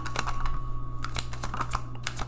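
Tarot cards being drawn from the deck and dealt onto the table: a rapid, irregular run of light clicks and taps as the cards and fingernails strike each other and the tabletop.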